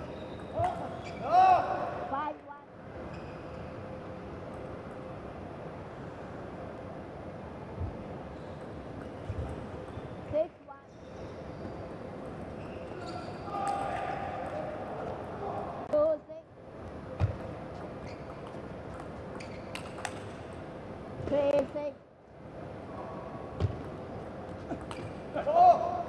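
Table tennis rallies: the plastic ball clicking sharply off the table and the players' rubber bats, in a large hall with a steady background hum. Short shouts come in a few times, around two seconds in, in the middle and near the end.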